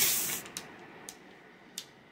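A short breathy rush of air, like a hard exhale, lasting about half a second. Then come three faint clicks spread over the next second and a half.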